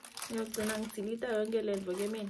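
A woman talking, with clear plastic packaging crinkling in her hands as she opens it.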